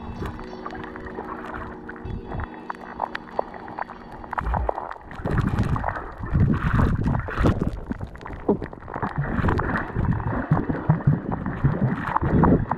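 Background music with long held tones fades out in the first few seconds. It gives way to irregular, muffled sloshing and gurgling of water around a camera held underwater while snorkeling.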